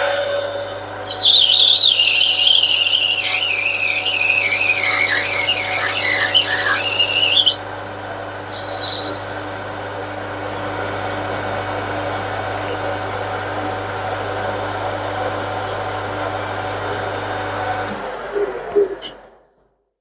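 Metal lathe turning down a brass rod, the cutting tool squealing on the cut: a loud, high, wavering squeal that slides down in pitch over about six seconds, then a short second squeal a little later. Under it the lathe's motor and gearing hum steadily, and the hum stops a couple of seconds before the end as the lathe is switched off.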